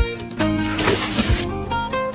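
Background music: a plucked-string melody over a steady beat, with a short hiss about a second in.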